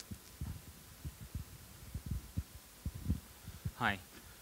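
Irregular low, muffled thumps and bumps of a microphone being handled, several a second, as the microphone changes hands for the next question.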